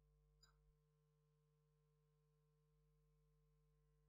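Near silence: the sound track drops out, leaving only a very faint steady hum.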